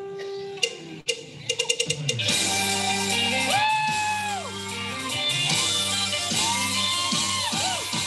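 Live band music from a street concert. A held note, a couple of sharp hits and a quick run of strikes about a second and a half in, then the full band comes in with gliding, bending pitched lines over a steady low part.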